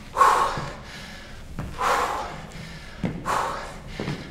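A man breathing out hard three times, roughly every one and a half seconds, from the exertion of weighted lunges. A couple of faint soft thuds come between the breaths.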